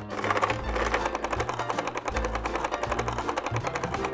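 Hand crank on a 1993 McDonald's McNugget Snack Maker toy being turned to coat a nugget in crushed cereal: a fast, steady clicking rattle of plastic parts and tumbling crumbs. Background music with bass notes plays under it.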